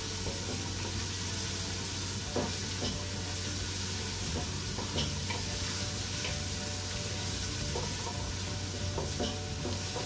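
Chopped onion and garlic sizzling in hot oil in a pot on a gas stove while being sautéed, stirred with a spoon that scrapes and knocks against the pot a few times.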